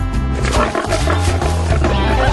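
Background music with a heavy bass line, with a loud pitched sound that bends up and down laid over it.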